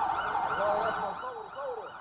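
Emergency-vehicle siren wailing in a rapid rise-and-fall cycle over a steady rushing background, fading a little toward the end.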